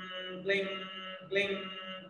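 A man chanting a one-syllable tantric seed (bija) mantra over and over on one steady pitch. Each syllable is held briefly before the next begins, a little faster than once a second.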